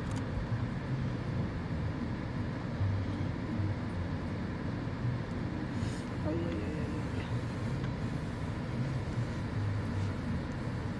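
Steady low hum of a car idling in place, heard from inside its cabin.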